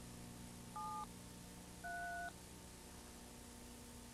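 Touch-tone telephone keypad dialing: two short beeps, each a pair of tones, about a second apart, over a faint steady hum.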